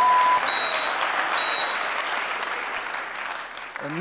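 Studio audience applauding, the clapping slowly dying away. Over it, a held electronic beep cuts off about half a second in, then two short high beeps follow about a second apart, in the manner of a heart-monitor sound effect.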